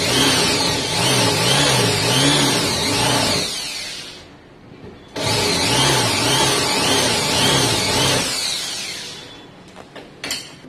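Corded electric drill running in two bursts of about three seconds each, its pitch wavering up and down about twice a second. Each burst spins down and stops, the first at about four seconds in and the second near the end after restarting just past five seconds.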